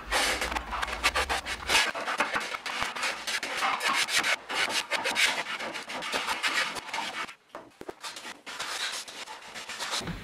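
Hand plane shaving wood from a guitar headstock in repeated rasping strokes, with a short pause about seven and a half seconds in.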